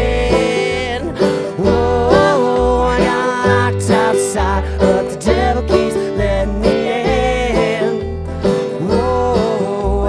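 Acoustic country string band playing an instrumental stretch of the song: strummed acoustic guitar, plucked upright bass on a steady alternating bass line, and a picked lead string instrument.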